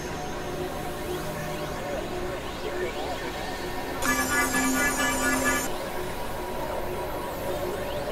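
Experimental electronic noise music: a dense synthesizer drone and noise texture. About four seconds in, a burst of bright, high, stuttering synth tones joins it for about a second and a half.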